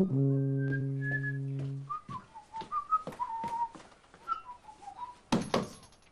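A steady low held musical note for about two seconds. Then a person whistles a wandering tune, with light clicks, and a louder thump comes near the end.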